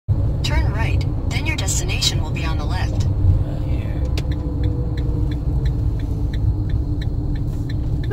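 Steady low road rumble inside a moving car, with a voice in the first three seconds. From about four seconds in there is a light, even ticking, about three a second.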